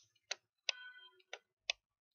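About five sharp, separate clicks over two seconds from pen input on a computer as handwriting is drawn onto a slide.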